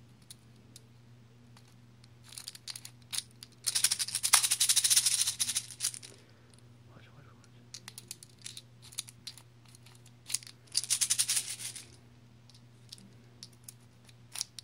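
Plastic airsoft BBs rattling inside a clear high-capacity airsoft pistol magazine as it is shaken to feed them toward the spring, in two long rattling spells about four and eleven seconds in, with scattered clicks in between.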